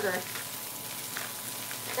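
Food frying in a skillet: a steady sizzle with a few small crackles.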